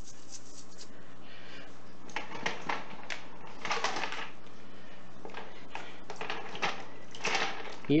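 Small brush scrubbing a quartz crystal cluster and the stone being dipped in a bucket of water to wash off the coating: short irregular scrubbing and splashing sounds over a steady low hum.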